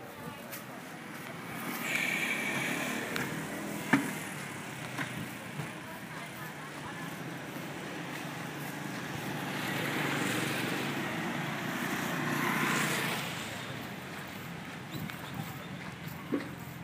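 Street traffic: vehicles passing on the road, one about two seconds in and a louder one swelling and fading between about nine and thirteen seconds, over a steady street background, with a single sharp click about four seconds in.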